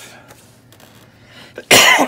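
A man coughs once, short and loud, near the end after a quiet stretch.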